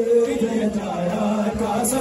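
A group of men's voices chanting a noha lament refrain together in a sustained, slowly gliding melodic line.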